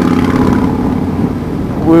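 Yamaha Raider S's V-twin engine running at a steady cruise through a straight-piped exhaust that has lost its baffle. A voice starts just at the end.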